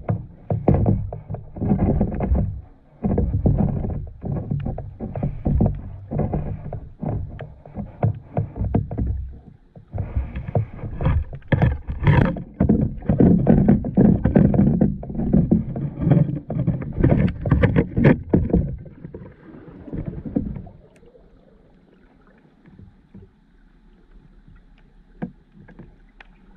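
Underwater sound heard through a camera's waterproof housing: a loud, irregular rumble of surging water with many crackling clicks and knocks. It falls away to a faint hiss about 21 seconds in.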